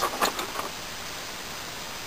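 Obsidian pieces clicking against each other as a piece is picked out of a box of them: several quick clicks in the first half second or so, then steady background noise.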